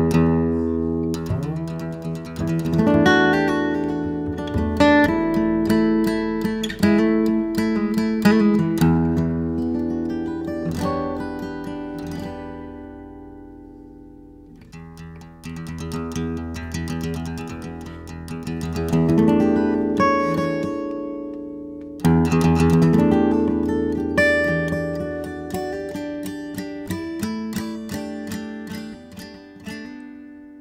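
Instrumental acoustic string music: a plucked acoustic guitar plays slow phrases of ringing notes that are left to die away. The sound fades to its quietest about halfway through. A new phrase then builds, and a sharp attack comes about two-thirds of the way in.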